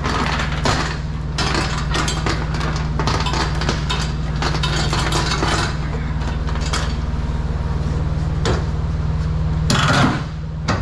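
Steel transport chains clinking and rattling as they are gathered and hooked up around a chain binder, with a louder metal clank near the end, over a steady low hum.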